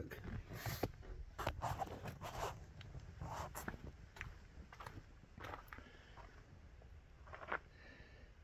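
Footsteps on dirt and gravel with rustling handling noise: a series of short, irregular scuffs, one a little louder near the end.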